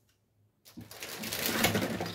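Clear plastic wrapping of a sealed magazine pack crinkling as it is handled, starting just under a second in and growing louder.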